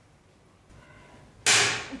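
Faint scratching of a pen writing on paper, then near the end a sudden loud sharp crack that dies away within half a second.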